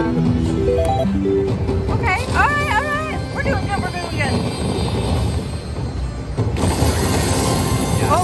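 Slot machine bonus-round music: a stepped melody of short, mallet-like notes that keeps playing while the free spins run. About six and a half seconds in, a hissing, sparkling swell rises over it.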